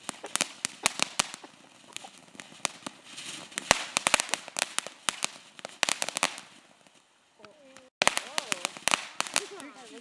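Ground fountain firework spraying sparks, a dense run of sharp crackling pops over a steady hiss.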